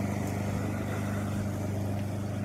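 Small engine of a garden power tool running steadily at an even speed: a constant low drone.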